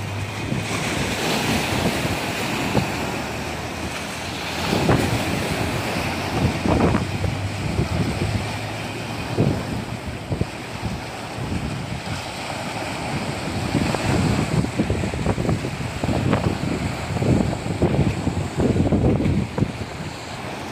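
Small sea waves washing up the sand and breaking around rocks at the water's edge, with wind buffeting the microphone in repeated gusts, most often in the second half.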